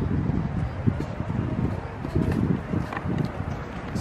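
Wind buffeting the microphone outdoors: an uneven, gusty low rumble.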